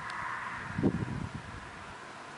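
A short low rumble about a second in, over a steady hiss with a faint steady tone.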